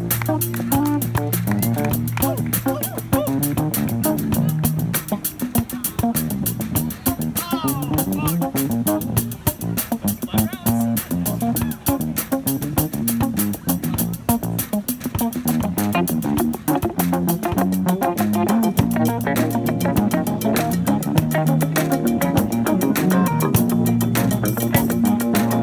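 Live fusion jam band of drum kit, keyboard, electric guitars, electric bass and saxophones, with the electric bass stepping forward for a solo.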